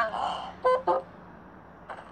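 A girl's voice: a short breathy sound, then two brief voiced sounds about half a second in. After that only low room noise.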